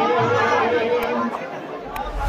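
A man's voice through a microphone with crowd chatter around it. A held musical note runs under the voice and fades out about a second in.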